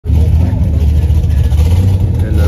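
Car engine idling with a loud, steady low rumble.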